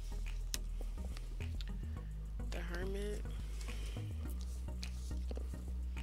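Background music with a steady bass line, over light clicks and taps of tarot cards being handled and laid down on a cloth-covered table.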